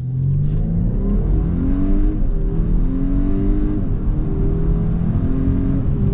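2019 Audi A5 Sportback quattro's turbocharged four-cylinder accelerating hard from a standstill, heard from inside the cabin. The engine note climbs steadily, drops back at each upshift about every two seconds, and climbs again, over a steady rumble of road noise.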